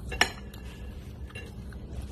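Metal cutlery clinking on ceramic dishware: one sharp clink just after the start and a fainter one later, over a low steady background hum.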